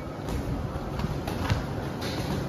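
Boxing gloves landing during sparring: a few short thuds, the loudest about a second and a half in, over steady low background noise.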